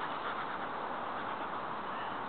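Steady outdoor background noise, with a few faint high chirps near the start.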